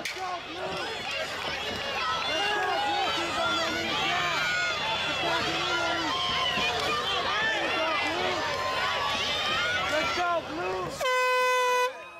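Cage-side crowd and corners shouting, many voices yelling at once. Near the end an air horn sounds one steady blast of about a second, signalling the end of the round as the referee steps in.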